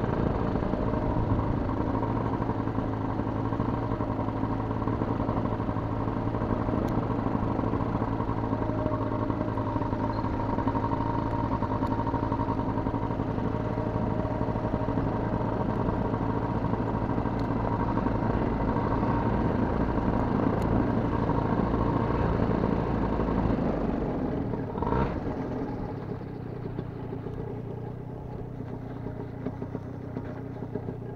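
Paramotor engine and propeller running steadily behind the pilot. About 25 seconds in there is a brief knock, and the engine then runs on noticeably quieter, throttled down.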